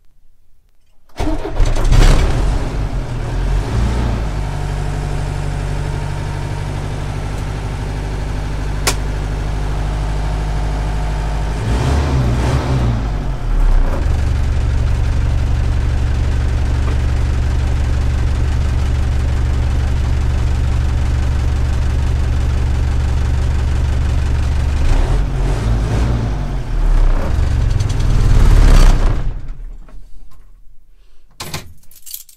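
Cold start of a Mercedes-Benz 608D's four-cylinder diesel engine: it cranks and catches about a second in, then runs at a fast idle. It settles to a lower, steady diesel idle around twelve seconds in, runs unevenly near the end and is shut off just before the end.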